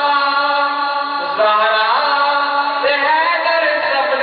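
A man singing a devotional chant solo into a microphone, in long melodic lines with held notes and sliding pitch; the sound is thin and muffled, as on an old low-quality recording.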